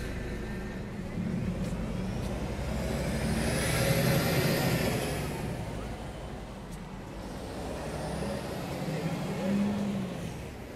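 A motor vehicle driving past on the street, its engine and tyre noise swelling to a peak about four seconds in and then fading, with a high whine that rises and falls as it goes by. A smaller swell follows near the end.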